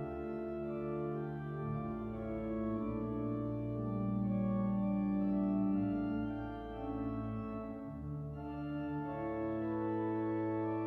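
Pipe organ playing slow, sustained chords with deep pedal bass notes under them. The bass drops out for about a second near eight seconds in, then comes back.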